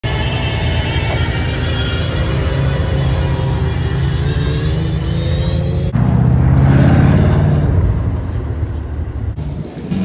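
An Aston Martin Valkyrie's V12 running with a steady, many-toned drone that climbs slowly in pitch. At about six seconds it cuts to a Bugatti Chiron Pur Sport's quad-turbo W16 accelerating past, loudest about a second later and then fading away.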